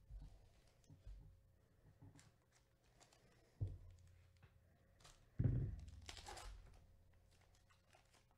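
Foil trading-card pack wrapper being handled and torn open with gloved hands: two soft thumps, then a short crinkling tear about three quarters of the way in.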